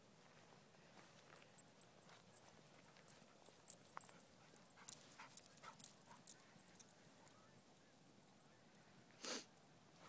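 Mostly near silence, with faint scattered ticks and rustles from dogs running and playing in dry grass, and a short breathy burst near the end.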